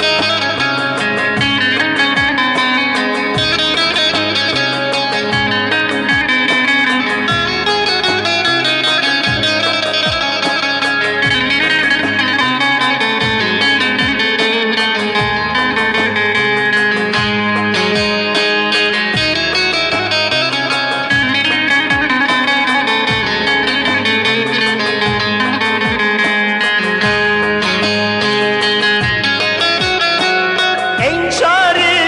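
Turkish folk music without singing: a bağlama (saz) playing a fast melody of plucked notes over a bass line.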